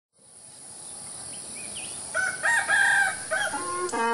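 A rooster crowing in one broken call about two seconds in, the loudest thing here, over a steady high hiss with a few faint bird chirps. A flute-like melody of rising notes begins near the end.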